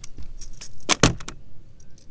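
A quick run of clattering knocks and a metallic rattle on a bass boat's deck, loudest about a second in, as the landing net is set aside and the landed fish, still hooked, is handled.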